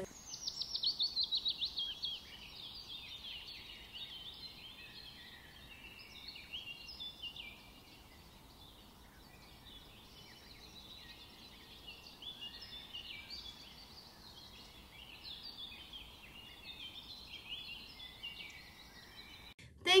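Songbirds singing and chirping quietly: a quick run of falling notes in the first two seconds, then scattered high calls and trills.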